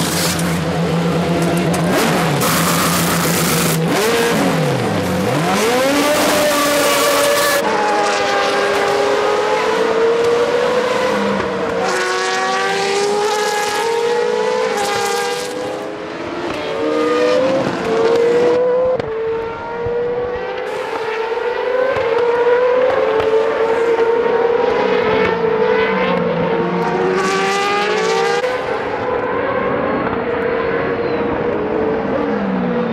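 Formula Renault 3.5 single-seaters' V8 racing engines running hard on track, several cars overlapping. Their pitch climbs in repeated runs and drops quickly at each upshift. A loud, harsh noisy stretch fills the first several seconds.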